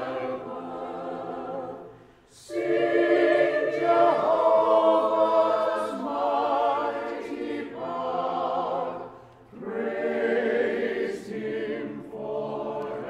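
Mixed chamber choir singing an anthem in sustained phrases, with two brief breaks for breath, about two seconds in and near the end.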